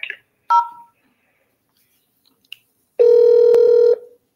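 Telephone tones as a call is dialled: a short key-press beep about half a second in, then a louder, steady tone lasting about a second near the end.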